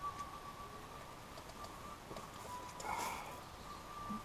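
Quiet inside a tent, with one brief soft rustle about three seconds in as he shifts position, over a faint steady thin whine.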